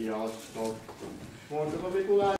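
Speech: voices talking, a short phrase near the start and a louder, higher voice from about three quarters of the way in.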